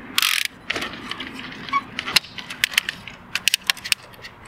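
Thule UpRide roof bike rack's wheel arm being raised against the front wheel and ratcheted tight: a short scrape, then a run of sharp ratchet clicks that come thicker near the end.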